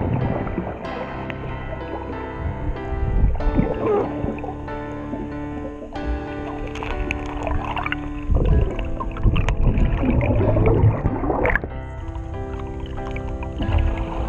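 Background music with long held notes, over underwater gurgling and bubbling. The water noise grows loudest about two-thirds of the way through.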